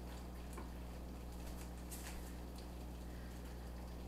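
Thick, creamy chicken pot pie filling simmering on low in a cast-iron skillet, faint soft bubbling pops over a steady low hum.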